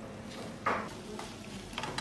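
Metal spoon stirring chopped offal for kuchmachi in a metal pan, with one sharp scrape against the pan about two-thirds of a second in and a lighter one near the end, over a steady frying sizzle.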